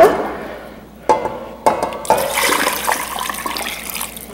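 Water poured in a steady stream into a pressure cooker pot holding chicken and vegetables. It starts about a second in and grows fuller about two seconds in.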